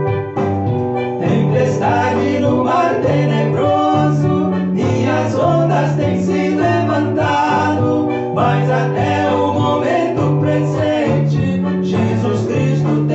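A man singing a song to electronic keyboard accompaniment with a steady, repeating bass line. The voice comes in about half a second in and carries on over the keyboard.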